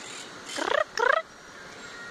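Parakeets calling from the treetops: two short, raspy squawks falling in pitch, about half a second apart, near the middle.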